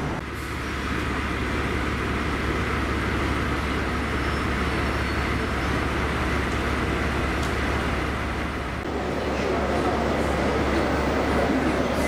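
A standing locomotive's steady running hum under the murmur of passengers talking on a station platform.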